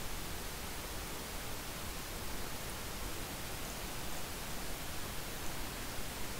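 Steady hiss of recording background noise, even and unchanging, with no distinct sound events.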